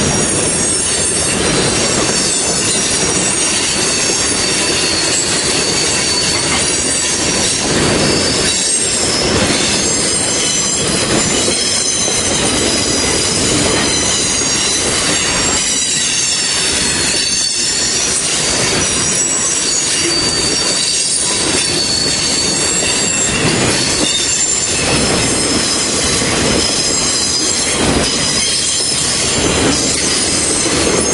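Freight train boxcars and tank cars rolling past close by: a loud, steady rumble of steel wheels on rail, with high-pitched wheel squeal riding over it.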